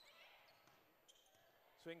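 Near silence: faint ambience of a basketball game in a gym, with a few faint short high sounds from the court.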